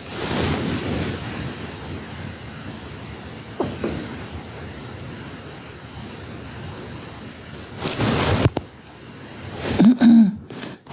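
Steady rushing noise on a phone's microphone, with a brief rustle a few seconds in and a louder rustling burst about eight seconds in.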